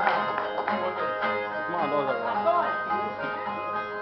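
Two ten-string Brazilian resonator violas (viola dinâmica) being plucked and strummed in an instrumental passage between sung stanzas of a repente duel.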